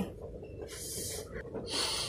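A woman sniffing the air twice, two short breathy sniffs about a second apart.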